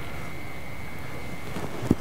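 Steady background hiss with a faint, steady high whine, then a single short click near the end as the C-Finder rangefinder is seated flat on the camera's top mount.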